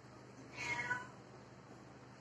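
A domestic cat meows once, a short call about half a second in.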